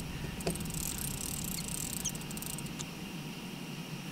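Night-time outdoor ambience: insects chirping faintly in high fine ticks over a steady low hum, with one soft click about half a second in.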